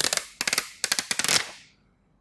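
A thick plastic (not glass) screen guard being peeled off a smartphone's display: a rapid crackle of sharp clicks for about a second and a half, then dying away.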